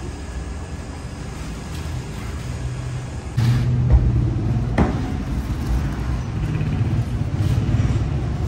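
A motor running with a low, steady hum and rumble that grows louder about three and a half seconds in, with a sharp click about a second later.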